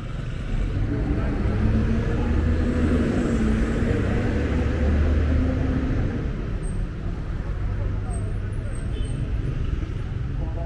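Street traffic: a motor vehicle's engine passes close by, swelling about half a second in, loudest around the middle, then easing off, over a steady traffic rumble.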